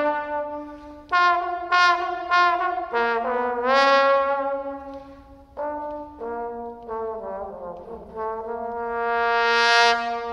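Unaccompanied trombone playing a slow melodic line of separate notes. About four seconds in it slides up into a note, and near the end it holds one long note that swells louder and brighter.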